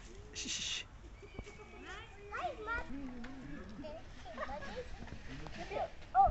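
Background chatter of several visitors, children's voices among them, none of it clear words, with a brief hissing noise about half a second in.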